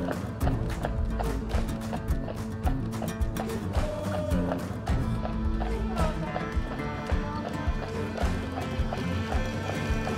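Background music, with the hooves of a horse pulling a carriage clip-clopping on a paved road.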